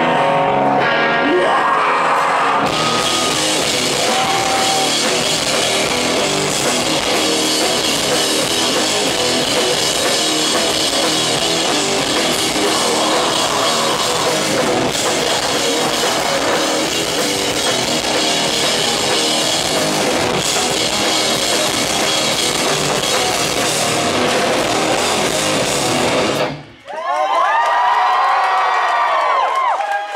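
A rock band playing loudly live, with electric guitars, bass and drum kit, ending abruptly about 27 seconds in. The crowd then cheers and whistles.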